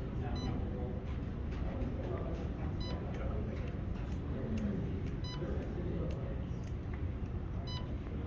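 Short electronic beeps, one about every two and a half seconds (four in all), each a single tone with a bright edge, over indistinct background chatter in the room.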